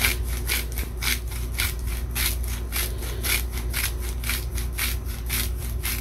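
Hand-twisted salt grinder grinding coarse salt, a rhythmic rasp of about four to five strokes a second.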